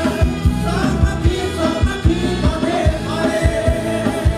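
Live band playing a Thai dance song: male vocals sung into microphones over a full band, with electric guitar and a steady, driving kick-drum beat.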